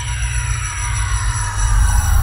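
Intro sting of electronic sound design: a deep pulsing bass drone under several falling sweeps and steady high tones, growing louder, with a swell of hiss near the end.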